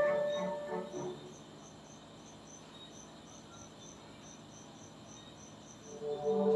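Piano notes dying away in the first second, then a cricket chirping faintly: short high chirps, several a second, steady but slightly irregular.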